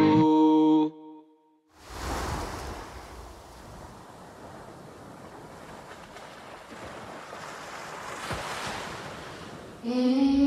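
A song's last held notes ring out and stop about a second in; after a brief silence, the sound of ocean surf fades in, a steady wash of waves that swells a little and eases.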